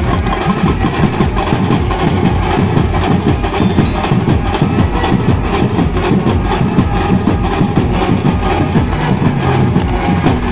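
Brass band's drums playing loudly and without a pause, a dense, steady beat.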